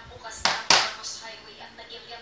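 Metal baking pan set down on a table: two knocks about a quarter of a second apart, the second louder, each dying away quickly.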